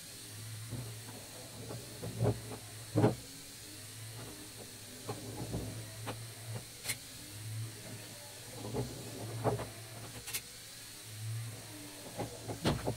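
Electric motors of a LEGO Technic walking vehicle humming steadily as its tracked skis and legs crawl over a pile of wooden sticks, with a few sharp knocks and clicks from the plastic parts and sticks.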